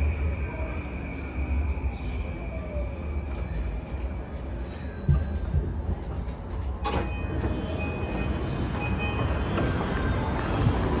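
Yamanote Line E235-series electric train slowing to a stop at a station: running rumble with a falling motor whine and a faint high squeal in the first seconds. A sharp clunk comes about seven seconds in, followed by short high beeps, as the train halts and the doors open.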